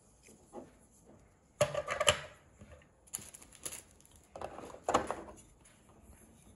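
Small plastic trimmer attachments handled in the hands: three short bursts of clicks and knocks with light rustling.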